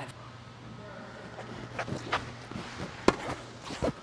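Tennis balls being struck by rackets and bouncing on an indoor court during a live rally: a few sharp pops spaced under a second apart, the loudest about three seconds in, over a low steady hum.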